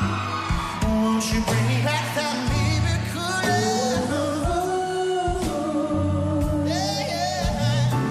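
Live band playing with a male lead vocal singing a long, gliding melody over steady bass notes.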